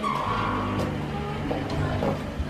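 A car's tyres skidding, a screech that swells and fades within the first second, over a steady low hum.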